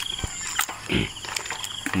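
Nylon gill net being handled, with a few sharp clicks and rustles, and a brief low grunt-like sound about a second in. Insects chirp steadily in the background.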